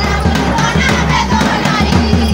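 Jhumur folk dance music with a steady drum beat, and a crowd of voices calling out over it.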